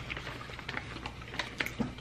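Quiet eating sounds at a table: scattered small clicks and crinkles from butcher paper being handled, mixed with chewing of barbecue ribs.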